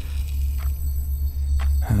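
Low, steady rumbling drone of a background ambience bed, with two faint soft clicks over it.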